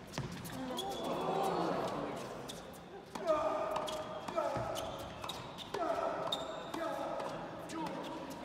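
Tennis ball struck by rackets in a doubles rally: several sharp hits spread over the few seconds, ringing in a large hall, with voices calling out between them.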